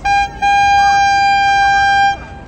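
A hand-held horn sounding one short toot, then a single long, steady blast of about a second and a half.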